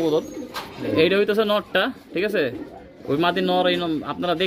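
Domestic pigeons cooing in short phrases, mixed with a man's voice.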